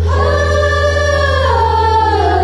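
A group of girls singing together in unison: a long held note that slides downward in pitch about a second and a half in, over a steady low drone.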